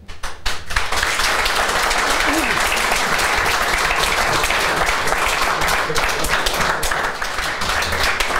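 Audience applauding, many hands clapping together, swelling within the first second and then holding steady.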